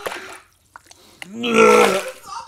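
A man retching, a loud burp-like gagging noise that starts about a second and a half in, after a short quiet gap.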